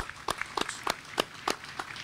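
A small group of people clapping: scattered, irregular hand claps thinning out at the tail of a round of applause.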